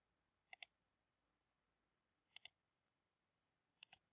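Computer mouse button clicked three times, each a quick pair of clicks (press and release), about half a second in, past the middle and near the end, faint over a quiet background.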